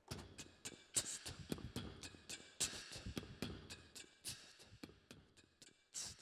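Beatboxing into a handheld microphone: a rhythmic run of mouth-made kicks, snares and clicks.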